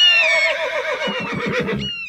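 A horse whinnying in one long, wavering neigh, with a bird of prey's shrill, falling cry at the start and again near the end.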